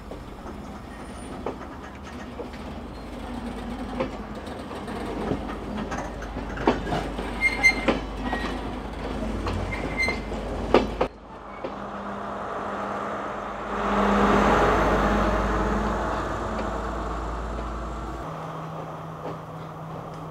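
Passenger train moving off, a steady rumble with its wheels clicking over rail joints, the clicks coming faster and louder. About eleven seconds in the sound changes abruptly to a rumble that swells for a few seconds and then fades.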